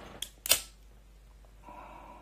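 A handheld lighter struck twice, two sharp clicks about a quarter and half a second in, the second louder, to relight a smoke; a faint steady hiss follows near the end.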